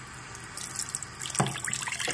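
Bathroom sink tap turned on, water running steadily from about half a second in to wet a toothbrush, with a brief knock about a second and a half in.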